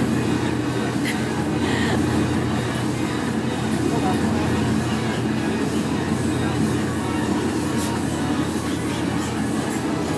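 Hurricane simulator booth's fans blowing at full strength: a steady, loud rush of wind with a low hum.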